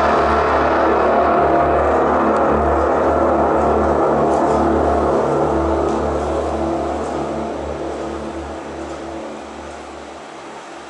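Dark, rumbling stage soundtrack played through the theatre's sound system: a deep low throb under a dense wash of sound with a faint held tone. It stays level for about six seconds, then slowly fades away.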